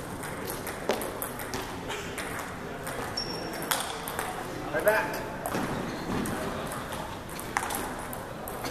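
Table tennis ball ticking sharply against paddles and the table, a handful of separate clicks spread through, with voices chatting in the background.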